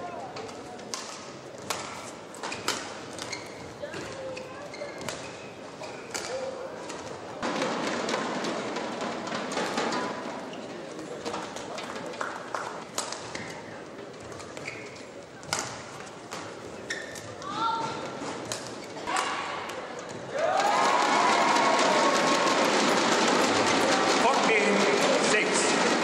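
Badminton rallies: a shuttlecock struck back and forth with sharp racket hits in a large hall, with the arena crowd cheering after a point about seven to ten seconds in. About twenty seconds in, a loud burst of crowd cheering and shouting takes over.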